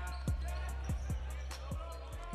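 Basketball dribbled on a hardwood gym floor, a run of short low bounces about two a second, over music with a deep bass line that fades near the end.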